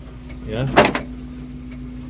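Suzuki Carry Futura 1.5 fuel-injected engine idling with a steady low hum, under a short spoken word.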